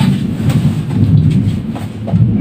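Low rumbling noise with a few faint clicks as small foam blocks are handled and pressed together on a plastic cutting mat on the desk.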